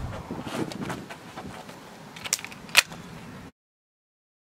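Faint outdoor background noise with a few small clicks and one sharper click, then the sound cuts off abruptly to silence about three and a half seconds in.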